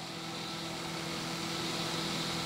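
A steady low machine hum with a few fixed tones under it, growing slightly louder through the pause.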